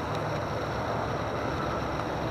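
Steady low rumble of background vehicle traffic, even in level with no distinct events.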